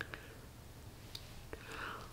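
Lipstick being applied to the lips: a few faint small clicks and lip sounds, then a soft breath near the end.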